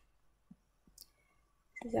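Near silence with two faint short clicks, about half a second and a second in, then speech begins near the end.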